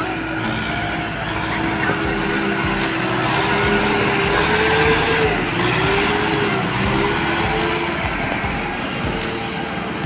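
Farm tractor engines running under heavy load in deep mud, the engine note rising and dipping around the middle as a tractor works through the flooded field.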